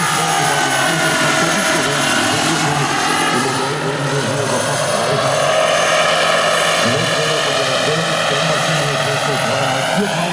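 Radio-controlled scale model of a Eurocopter EC120 Colibri helicopter with a turbine flying past: steady rotor sound with a high whine whose pitch falls over the first few seconds and rises again after about four seconds.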